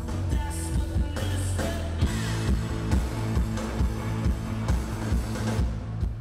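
Live rock band playing: electric guitar and drums over a heavy low end, with a steady drum beat about twice a second from about two seconds in.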